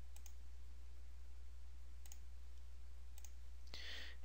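Computer mouse clicking a few times, spaced apart, over a steady low hum.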